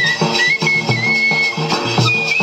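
Live Indian folk band music: a small high-pitched flute plays a wavering melody over a quick, steady beat on bass drum and snare.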